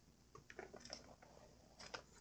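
Plastic card-sleeve page of a ring binder being turned: faint crinkling and light clicks, mostly in the first second, with a few more near the end.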